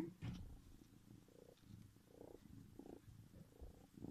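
Grey tabby kitten purring faintly, a low rumbling purr close to the microphone.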